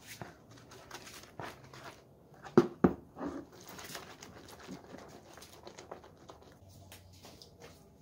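Rubber-gloved hand swishing and squeezing soap in soapy water in a plastic basin, working up a lather: faint, irregular splashing and squelching, with one louder short bump a little over two and a half seconds in.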